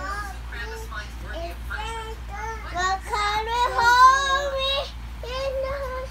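A young girl singing a melody with held, gliding notes, climbing to her loudest, highest notes about three to four seconds in.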